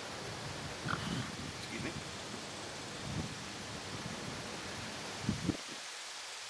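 Steady outdoor background hiss with a fluctuating low rumble on the microphone and a few soft low bumps from handling a glass. The rumble cuts off suddenly near the end.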